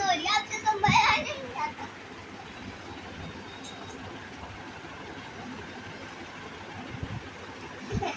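Children's voices in the first second or so, high-pitched and excited, then a steady faint background hiss with nothing else clear.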